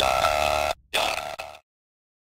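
Electronic logo-intro sting: stuttering, chopped bursts of a buzzy synth sound, with a short gap just before the last burst, cutting off abruptly about one and a half seconds in.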